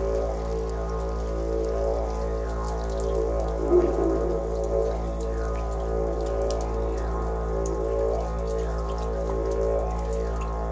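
Didgeridoo playing one steady low drone with shifting overtones and a brief louder accent nearly four seconds in. Layered over it is a water recording of many small drips and patters.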